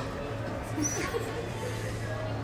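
Brief small squeaks and whimpers from an infant, over a steady low hum.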